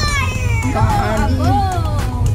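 A young child's high-pitched voice calling out in rising and falling tones, over the steady low rumble of a car cabin on the move.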